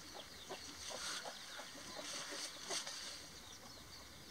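Faint chicken clucking: short calls repeating about three times a second over a thin, high outdoor chirping.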